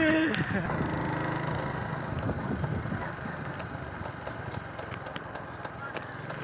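Engine of the vehicle carrying the camera running steadily at cruising speed, heard from on board, with wind and road noise.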